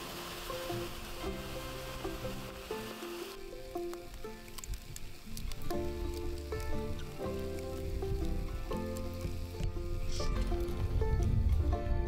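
Campfire embers hissing and sizzling as water is poured on to put the fire out, for about three seconds before stopping abruptly. Background music plays throughout and is louder.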